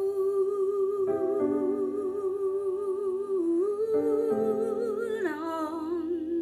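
A woman humming a slow wordless melody in long held notes with vibrato, over sustained piano chords that strike about a second in and again around four seconds in.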